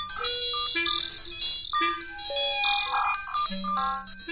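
Electroacoustic music for clarinet and tape: overlapping held tones step from pitch to pitch every half second or so, with bright, electronic-sounding high tones.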